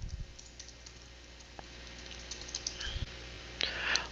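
Faint computer keyboard typing: scattered light key clicks over a low steady hum.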